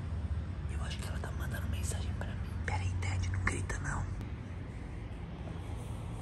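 A man whispering close to the microphone for a few seconds, with a steady low hum underneath.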